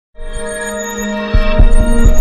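Intro music: a sustained drone of held tones with high twinkling notes, joined a little past halfway by deep, regular bass thumps as it gets louder.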